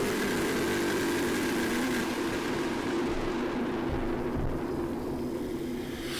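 A steady, engine-like drone with a low held hum that eases off slightly near the end. It is a non-musical intro sound between tracks of a grindcore album.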